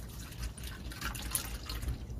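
Milky makgeolli (rice wine) pouring from a plastic bottle in a steady stream into a stainless steel bowl, the liquid splashing and filling the bowl.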